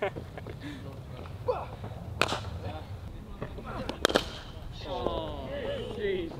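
Two sharp cracks of a cricket bat striking the ball in the practice nets, about two seconds apart, the second a quick double crack.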